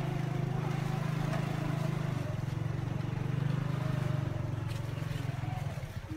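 Motorbike engine running steadily under load, heard from the pillion seat, with a fast even pulse in its note. It dips slightly in level near the end.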